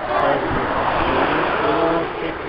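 A car driving past close by on the road: a rush of tyre and engine noise that swells soon after the start and holds, with the crowd's voices underneath.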